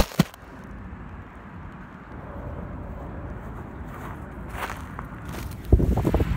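Handling noise and low rumble from a handheld camera on the move, with a couple of sharp knocks at the start and a few faint taps later. Near the end comes a heavy thump as the camera lurches down toward the grass in a near-fall.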